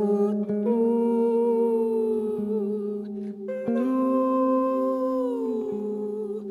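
Live contemporary chamber music: a woman's voice holds two long notes, each sliding slowly downward at its end, over a steady low drone.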